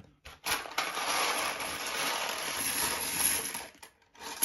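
A pile of small LEGO 2x2 plastic bricks pouring out of a small cardboard box onto a tabletop. It is a continuous rattling clatter of many bricks falling and tumbling over one another, starting about half a second in and lasting about three seconds.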